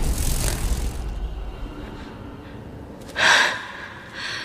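A woman's sharp gasp about three seconds in, the loudest sound, after a low rumble and hiss fade out over the first second and a half.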